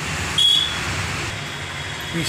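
Steady rushing background noise with a short, high-pitched beep about half a second in.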